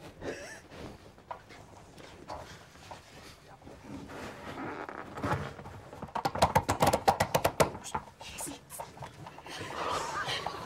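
Stifled laughter from people trying to stay silent: quiet snickers and breathy snorts, then a rapid run of choked, panting laughs about six seconds in that lasts about two seconds.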